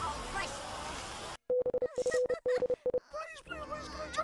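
Several cartoon soundtracks playing over each other: a jumble of voices and effects that cuts out about a second and a half in. Then comes a steady beep-like tone, chopped on and off rapidly for about a second and a half, followed by more cartoon voices.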